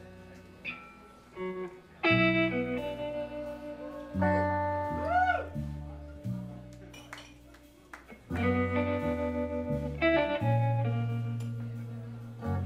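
Live electric guitar music in a slow, sparse passage: ringing notes and chords struck in phrases that die away between them, with low bass notes underneath and one note bent up and back down about five seconds in.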